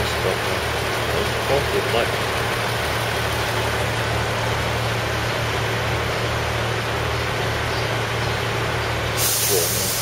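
Diesel multiple-unit train idling at a station platform, a steady pulsing low throb. About nine seconds in, a hiss sets in.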